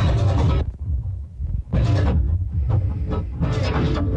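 Club techno from a DJ set recording, heavy in kick and bass. Near the start the track drops away for about a second, then the kick and bass come back in.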